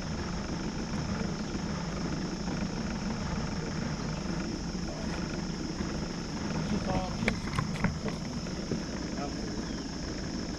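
Steady high-pitched insect drone over a continuous low hum, with a few faint clicks and a brief low voice about seven seconds in.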